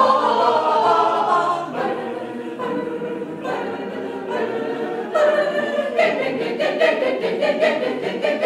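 Mixed chamber choir singing a cappella, women's and men's voices together. It is fuller and louder at first and softer through the middle, then from about six seconds in breaks into quick, evenly spaced rhythmic syllables.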